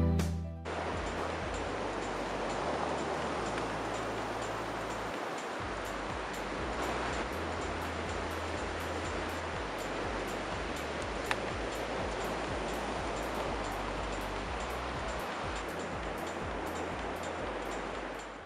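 Ocean surf breaking on a beach: a steady, even wash of noise, with background music cutting off within the first second and one faint click about eleven seconds in.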